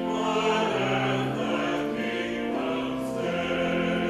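Church choir singing a hymn with organ, held chords moving in slow steady steps.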